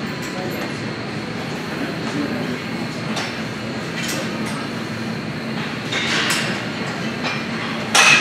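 Busy gym background: a steady din with distant voices, broken by several metal clinks of weights and cable-machine parts, the loudest clank coming right at the end.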